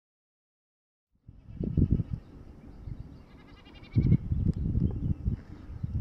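Faint, distant goat bleating, heard from a Spanish goat out on the slope, over wind gusting on the microphone. The sound starts about a second in, and the wind gusts are the loudest part.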